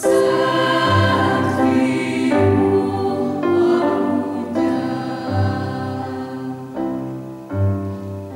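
Mixed choir of men's and women's voices singing in parts, holding sustained chords that change every second or so, with a low bass line under them.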